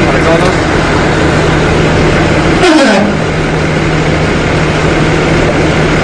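Engine-driven machinery of an automatic pipeline welding station running steadily: a constant low hum under loud, even mechanical noise. A short falling sound cuts through a little under three seconds in.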